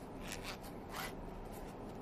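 Zipper on a small black protective camera case being pulled closed in short tugs, giving brief rasps.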